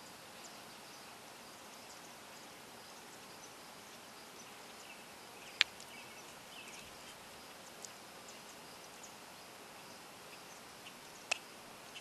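Quiet outdoor background with faint, scattered high bird chirps. A single sharp click, loud, comes about halfway through, and a softer one near the end.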